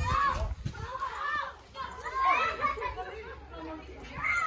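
Children's voices, chattering and calling out in high, rising and falling tones, with a short lull in the middle.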